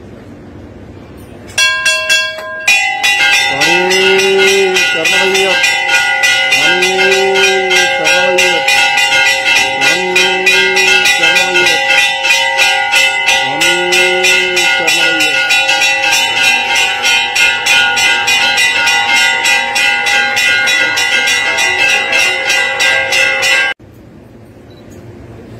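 Temple bells rung rapidly and continuously, with a conch shell blown four times over the bells, each blast about a second and a half long, rising and falling in pitch. The bells start about two seconds in and cut off suddenly just before the end.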